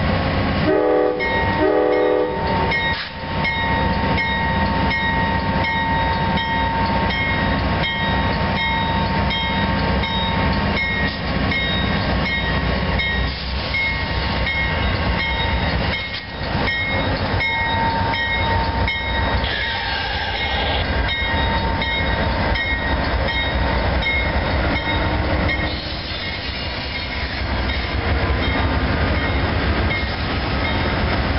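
Amtrak GE P42DC diesel locomotives sound two short horn blasts, then pull the Silver Meteor away under power. The diesels run steadily, a bell rings repeatedly, and the wheels click in a regular rhythm over the rail joints.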